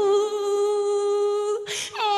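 A woman singing unaccompanied into a microphone, holding one long steady note for about a second and a half, then taking a quick breath just before the next phrase.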